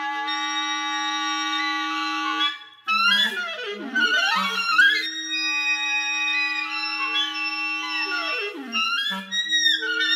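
Clarinets layered in a multi-part canon: long held notes overlap, and twice a line sweeps down in a steep glide, about a third of the way in and again near the end.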